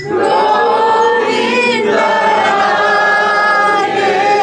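A group of voices singing a devotional chant together in long, held notes.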